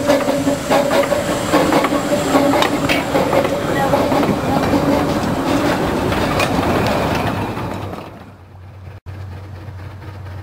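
Narrow-gauge steam locomotive and its carriages passing close by, wheels clicking rapidly over the rail joints with a steady low tone at first. The sound fades as the train draws away. About nine seconds in it drops suddenly to a quieter, steady background.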